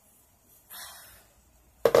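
A soft rush of noise a little under a second in, then two sharp knocks close to the microphone near the end, the loudest sound here.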